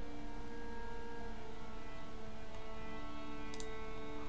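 Soft background music of sustained held notes, changing slowly, with a couple of faint clicks a little before the end.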